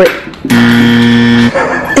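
Edited-in 'fail' sound effect: one held low note on an electric guitar, about a second long, that cuts in and cuts off abruptly.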